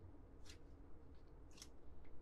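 Two faint, brief swishes of hockey trading cards sliding against each other as cards are pushed off a stack in the hands, about half a second and a second and a half in.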